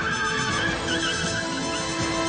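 Dramatic trailer music, with a car's tyres screeching in a wavering high squeal through the first second or so.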